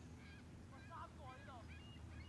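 Faint honking of geese: a string of short calls in quick succession over a low steady rumble.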